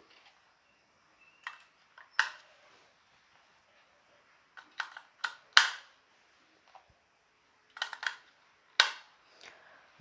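AA batteries being pressed into the slots of a Panasonic BQ-CC61 plastic battery charger: a series of sharp clicks and knocks as the metal cells snap against the spring contacts and plastic. They come in three clusters, a couple of clicks near the start, a quick run of four or five about halfway, and a few more near the end.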